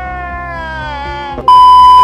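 A long, drawn-out tone that slides slowly downward in pitch, then, about one and a half seconds in, a loud steady electronic beep at a single pitch cuts in abruptly, like a censor bleep.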